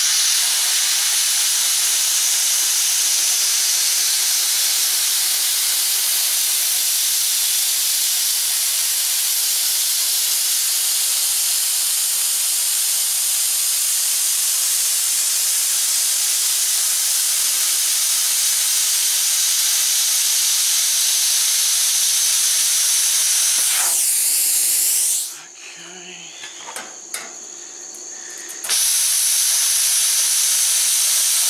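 Plasma cutter on a circle-cutting attachment cutting 304 stainless steel sheet: a loud, steady hiss while the arc is running. About five seconds from the end it stops for roughly three seconds, with a few light knocks, then starts again.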